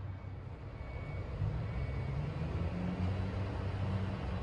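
Steady low rumble with a hiss over it, the background noise of a cruise ship cabin: the ship's machinery and air-conditioning ventilation. It swells slightly after the first second or so.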